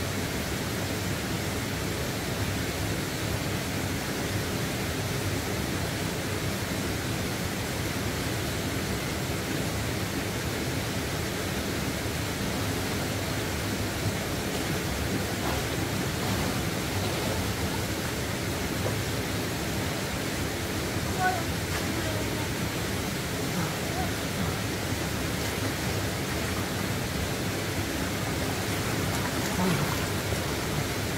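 Steady rushing of stream water flowing over rocks, even and unbroken throughout.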